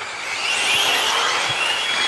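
Several 1/8-scale electric GT RC cars racing, their electric motors making a high whine that rises and falls in pitch over a steady hiss.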